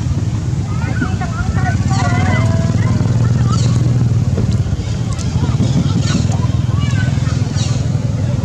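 A steady low motor-like hum throughout, with short, falling high chirps recurring every second or so above it.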